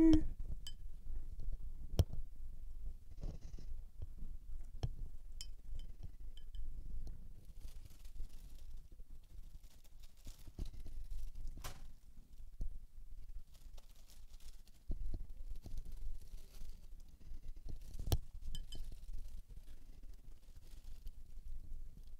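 Watercolor brush clicking against a round palette as paint is picked up and mixed, a few sharp clicks about two seconds in, near the middle and near the end, with soft brushing sounds in between.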